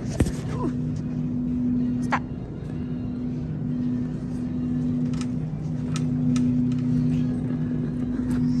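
Shopping cart rolling over a smooth store floor: a steady low rumble and hum, with a few sharp rattles of the cart.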